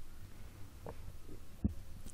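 Faint low steady hum in the recording, with a soft low thump about one and a half seconds in.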